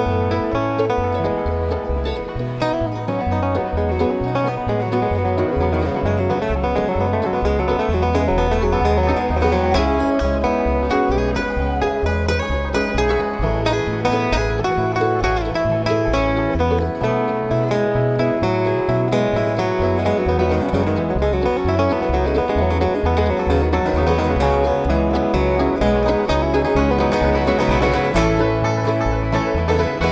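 Bluegrass band playing an instrumental break with no singing: acoustic guitar picking over steady upright bass notes, with banjo.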